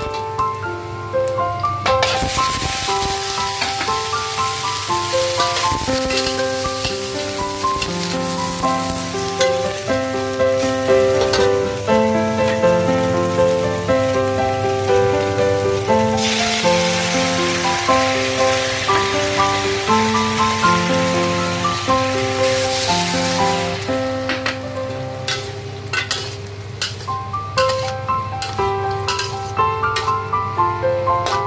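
Food sizzling in a hot stainless steel wok: minced garlic frying, then sauce hitting fried stuffed tofu and peppers. The sizzle starts about two seconds in, grows louder about halfway through and dies away a few seconds before the end. Gentle piano-like background music plays throughout.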